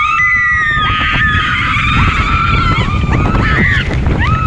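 Riders on a water-ride boat screaming in one long held scream as the boat goes down its drop, over a steady rush of wind and water on the microphone; the scream breaks off just before the end.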